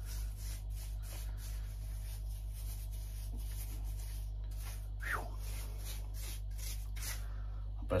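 A paintbrush working liquid wood hardener into the dry dead wood of an oak bonsai: a run of short, irregular scratchy bristle strokes over a steady low hum. A brief voice sound about five seconds in.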